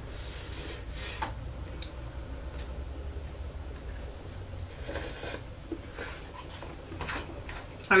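Instant ramen noodles being slurped from a cup, a few short slurps about half a second, one second and five seconds in, over a faint low hum.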